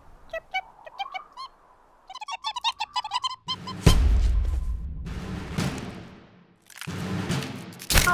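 Bird chirping: a few short separate cheeps, then a quick flurry of twittering. About three and a half seconds in, music comes in and opens with a heavy low hit, then carries on.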